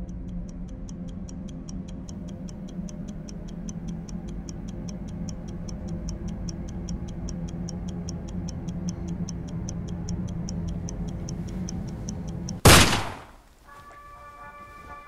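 Fast, even clock ticking, about four ticks a second, over a low steady drone. Near the end the ticking stops and a sudden, very loud burst of noise cuts in and dies away within about half a second.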